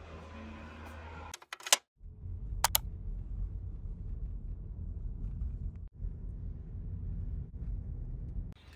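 Low, steady rumble of road noise inside a moving car's cabin, starting about two seconds in after a few sharp clicks and a short gap, with two more sharp clicks just after it begins.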